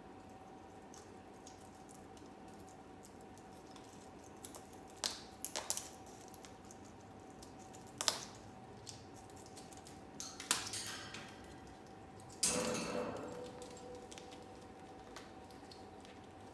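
Moluccan cockatoo crunching and cracking a pine cone with its beak: scattered sharp snaps and crackles, with a longer, louder crackle about twelve seconds in, over a faint steady hum.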